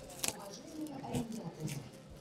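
Clear plastic wrapping around a leather handbag crinkling and rustling as the bag is handled, with a sharp crackle about a quarter second in. Faint voices are heard alongside.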